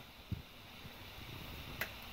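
Faint handling noises from plastic dishwasher parts in the tub: a soft low knock about a third of a second in and a brief sharp click near the end.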